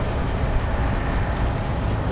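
Steady low rumbling outdoor background noise, even and unbroken, with no single distinct event.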